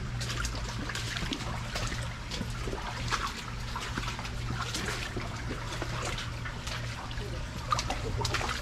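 Shallow creek water trickling and sloshing, with irregular small splashes and knocks from someone wading along a concrete-walled channel. A steady low hum runs underneath.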